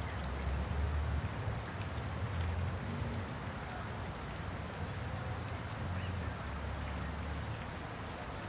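Small splashes and drips of water as black swan cygnets dabble and feed with their bills at the pond surface: many light, irregular ticks over a steady low rumble.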